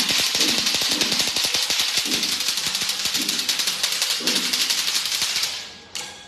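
A string of firecrackers going off in a dense, rapid crackle that cuts off abruptly just before the end. Under it, a low pitched percussion beat sounds about once a second.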